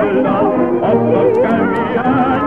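Old 1930 gramophone-era recording of a Danish revue song playing: a melody with heavy vibrato over an accompaniment, dull-sounding with nothing in the upper treble.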